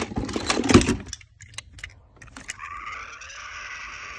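Die-cast toy cars and toys clattering and knocking together as they are handled, for about the first second. Then, from about two and a half seconds in, a battery-powered toy train's electric motor whirs steadily.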